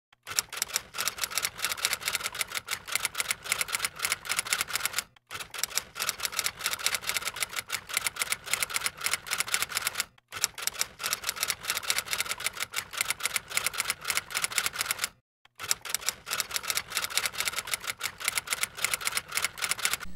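Typewriter keys clacking rapidly in four runs of about five seconds each, with brief pauses between.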